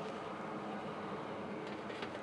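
Small squirrel-cage centrifugal blower running steadily, pushing air through a model grain bin, with a faint click near the end.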